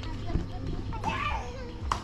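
A young child's high voice calling out briefly about a second in, with a sharp tap near the end.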